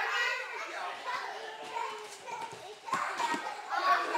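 Young children's voices chattering and calling out during play, with a few sharp knocks about three seconds in.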